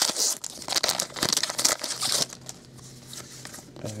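Foil trading-card pack wrapper being torn open and crinkled by hand, densest and loudest over the first two seconds, then fainter crackling as the wrapper is handled.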